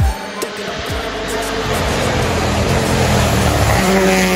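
Toyota GR Yaris Rally1 rally car approaching at speed on wet tarmac, its engine and tyre spray growing steadily louder as it nears, over a hip-hop backing track.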